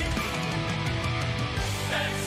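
Symphonic metal song playing, with distorted electric guitars and drums, and a quick run of drum hits through the middle.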